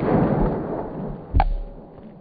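Shotgun blast from a Benelli M4-clone semi-auto shotgun firing a novelty 'duck shot' shell: a drawn-out boom fading away, then a second sharp bang with a low thump about one and a half seconds in.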